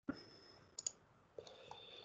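A few faint, separate clicks at a computer over a faint steady high electronic whine.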